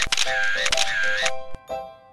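Smartphone camera shutter sound repeating rapidly, as in burst mode, over light plucked background music; the shutter stops about a second in, leaving the music alone.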